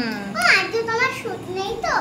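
A young child's voice: a few short, high-pitched calls or words, each falling in pitch.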